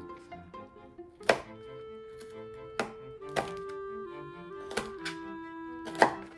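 Kitchen knife slicing through green chili peppers, four sharp cuts at uneven intervals, the first the loudest, over background music with held notes.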